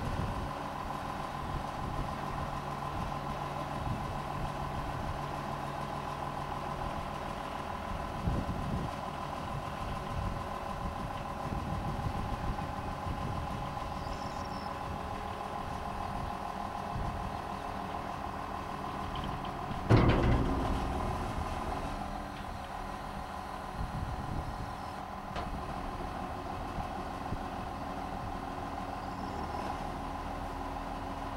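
Tractor engine running steadily with a steady high whine while the hydraulic rams lower the grain hopper's tipped bin. A single loud clunk about two-thirds of the way through.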